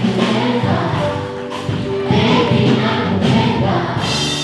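Music with singing: a man's voice into a microphone with a group of voices singing along.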